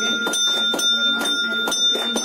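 Temple bell ringing steadily during aarti, with rhythmic hand clapping about four claps a second and voices underneath.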